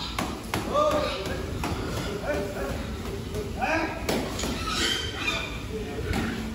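Pigs being herded in a pen with metal rails: a few short high-pitched calls and scattered sharp clanks and knocks.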